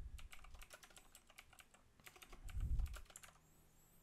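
Typing on a computer keyboard: a quick, uneven run of light key clicks, with a dull low thump about two and a half seconds in.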